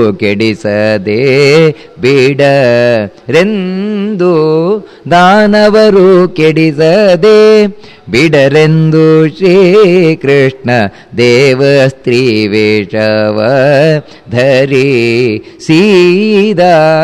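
A man's voice chanting a verse in melodic recitation: long held, wavering notes in phrases of one to three seconds, with short pauses for breath between them.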